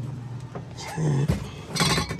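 Handling noise on the sheet-metal fan panel of a refrigerated display case: a single knock about a second in, then a short, loud metallic clatter near the end.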